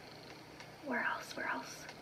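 A woman's quiet whispered speech about a second in, after a quiet start.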